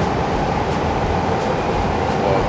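Steady, dense background rumble of a busy izakaya dining room, with no distinct events.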